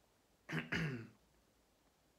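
A man clears his throat once, about half a second in: two quick voiced pushes lasting under a second.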